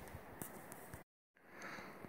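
Near silence: faint background noise with a few faint handling clicks, broken by a brief dead gap just after one second where the recording cuts.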